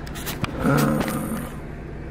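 Volkswagen Golf IV engine idling steadily, heard inside the cabin, with a sharp click about half a second in.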